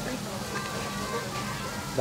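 Steady restaurant room noise with faint background music.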